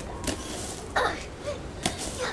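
Plastic leaf rake swung and dragged through grass and a pile of dry leaves, giving about five sudden scrapes and swishes in quick succession.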